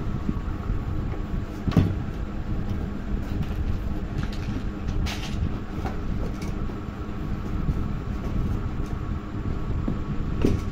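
Parts of a children's tricycle and its cardboard box being handled, with a few short knocks and rustles, over a steady low rumbling hum.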